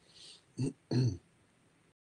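A person clearing their throat, two short low bursts about a third of a second apart, heard through video-call audio that cuts off abruptly near the end.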